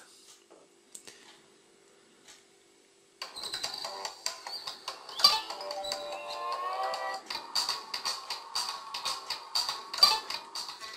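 Video game music playing through a Doogee F5 smartphone's loudspeaker at full volume, starting about three seconds in after a near-silent pause: a melodic tune with a steady beat.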